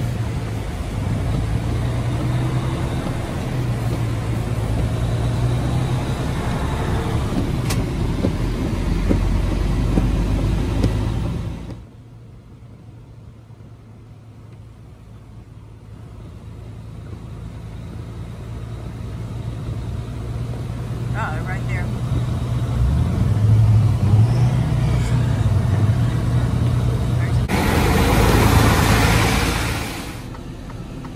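Steady engine drone and road noise heard from inside a Freightliner Cascadia semi-truck cab while driving a snow-covered highway. The sound drops off sharply about twelve seconds in, then builds back up. Near the end comes a loud rushing noise.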